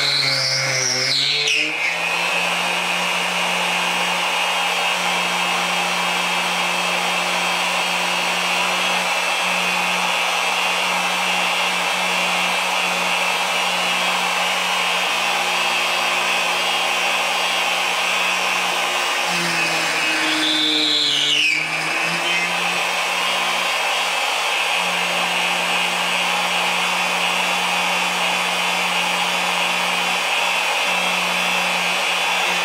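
Plunge router running steadily while routing a mortise in wood. Its pitch sags briefly twice, right at the start and about 20 seconds in, as the motor is loaded.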